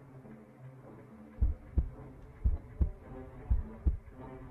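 Heartbeat sound effect: pairs of deep thumps about once a second, starting about a second and a half in, over low, slow sustained music.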